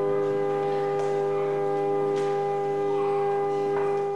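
Organ holding one long, steady chord.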